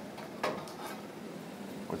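Maple sap evaporator boiling, a steady low hiss, with a brief knock about half a second in.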